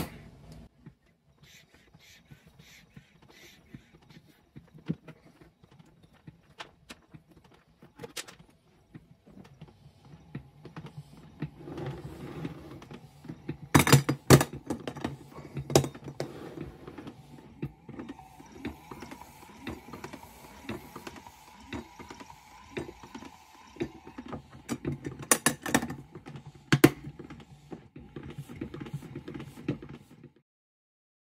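Electric-motor-driven air-cylinder mechanism of a DIY milker running inside a closed plastic toolbox, its speed set by an adjustable power supply. It starts slow with sparse clicks, then from about eleven seconds in runs louder with a steady hum and scattered knocks once the supply voltage has been turned up.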